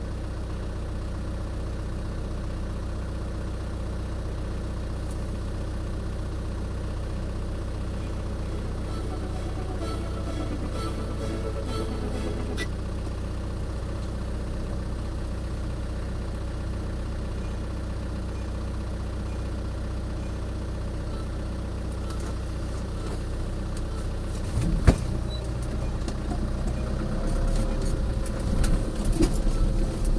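Off-road 4x4's engine idling steadily while the vehicle stands still. About 25 seconds in there is a single sharp knock, and near the end the engine note grows louder and rougher as the vehicle moves off over the rocky track.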